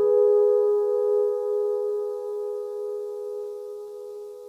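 Electronic arranger keyboard holding a sustained chord, a steady mid-range tone with a slight waver that slowly fades away.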